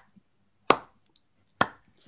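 Two sharp hand claps just under a second apart, a slow ironic clap.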